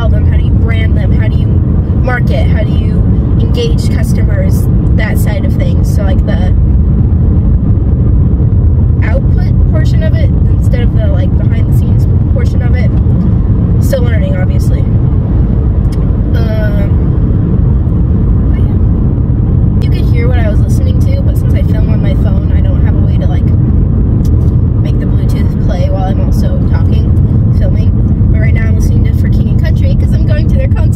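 Steady low road and engine rumble inside a moving car's cabin, with a woman's voice talking faintly over it.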